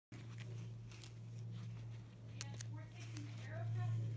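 A few small clicks and crinkles as a fabric repair patch and its paper backing are handled and pressed onto a backpack seam, over a steady low hum. A faint voice comes in near the end.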